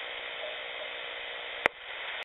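Shortwave receiver hiss and static on the 40-metre band, coming from a Grundig radio's speaker while the station stands by for replies to its CQ call. A single sharp click about one and a half seconds in, after which the hiss briefly drops.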